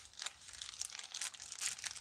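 Faint crinkling and rustling with small irregular ticks: small parts being handled in plastic packaging while screws are fetched.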